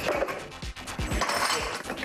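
A rubber bumper plate being loaded onto a steel barbell sleeve: several metal clinks and knocks and a short scrape, over background music.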